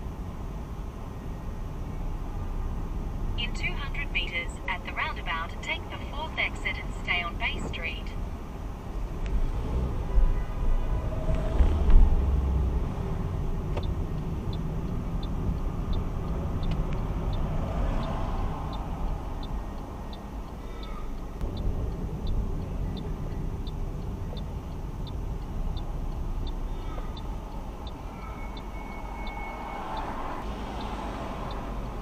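Steady road and engine noise inside a car driving in city traffic, with a brief low jolt about twelve seconds in. From about halfway on there is an even ticking, about one and a half ticks a second, typical of a turn indicator signalling a left turn.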